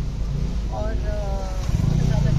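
Motorcycle engine running as it passes close by near the end, over a steady low street-traffic hum. A person's drawn-out voice is heard about a second in.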